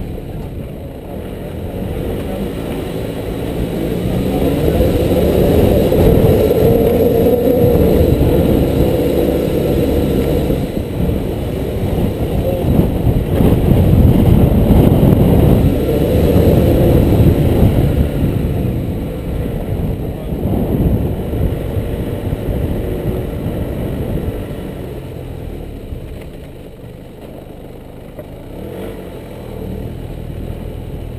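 Nissan Navara D22 4WD driving up a steep dirt hill track, with the engine's low rumble and wind buffeting the outside-mounted camera microphone. It grows louder over the first several seconds and eases off in the last third.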